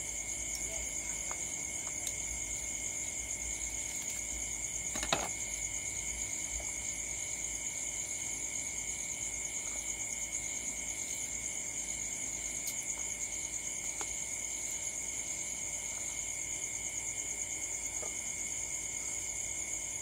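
Steady chorus of night insects such as crickets, a continuous high shrill with a second, lower ringing band beneath it. A single sharp knock comes about five seconds in, with a few faint ticks.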